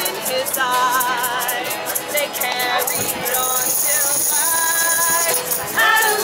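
Women singing a folk drinking song live, with acoustic guitar strumming and a tambourine shaken in rhythm. The sung notes waver with vibrato.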